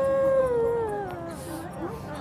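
A woman weeping aloud in one long wailing cry. It holds on one pitch, then slides down and fades out over the first second and a half.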